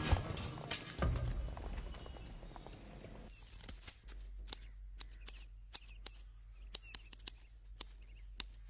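Film score fading out over the first few seconds, then a series of sharp, irregular clicks, about one or two a second, over a low steady background.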